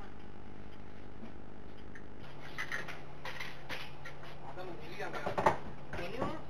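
A city bus engine idling with a steady low hum, its pitch shifting slightly about two seconds in. From the middle on there are people talking in the cabin, and a sharp knock near the end is the loudest sound.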